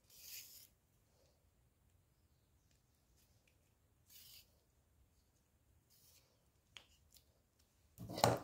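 Near silence, broken by a few brief, faint rustles of ribbon and thread being handled as a needle ties off a hand-sewn gathering stitch, and one small tick near the end.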